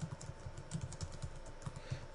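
Computer keyboard typing: a quick run of about a dozen keystrokes.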